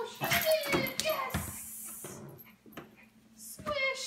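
A toddler's wordless squeals and a small dog's whimpers, in a few short calls that fall in pitch, with a quieter stretch in between.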